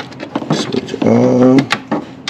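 A man's short wordless vocal sound, held for about half a second in the middle, with several sharp clicks and knocks before and after it.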